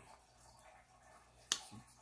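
Quiet room tone broken by a single sharp click about one and a half seconds in.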